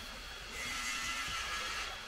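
Paint roller spreading wet Laticrete Hydro Ban XP liquid waterproofing membrane across a shower wall: one hissing roller stroke starting about half a second in and lasting about a second and a half.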